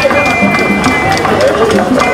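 Group singing with a quick, steady percussion beat under it.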